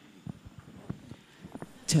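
Handheld microphone being handled as it is passed from one man to another: a handful of soft, irregular knocks and clicks. A man starts speaking into it near the end.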